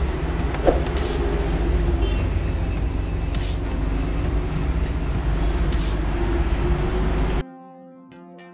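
Steady background rumble and hiss, with a few brief faint hisses and a click, cut off suddenly near the end by electronic music.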